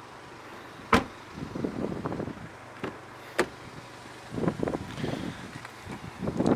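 Two sharp clicks, one about a second in and one about three and a half seconds in, with a fainter click between them and soft shuffling and rustling around them: handling noise as someone moves around an open car door.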